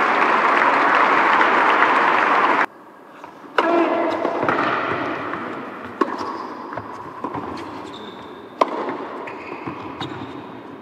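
Crowd applauding in an indoor tennis arena; the applause cuts off abruptly under three seconds in. After that comes a tennis rally: sharp racket-on-ball strikes about every one to one and a half seconds.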